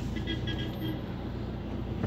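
Steady low engine and road hum of a car heard from inside its cabin while driving.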